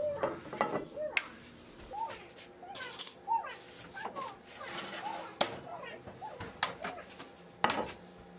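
Kitchen handling sounds: a glass olive oil bottle being handled and a metal spoon clinking against glass, with sharp clinks about five and a half seconds in and again near the end. Faint short whines rise and fall again and again underneath.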